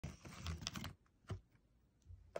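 A plastic pouch of freeze-dried capelin treats crinkling as it is handled: a quick run of clicky crackles for about a second, then one more crackle.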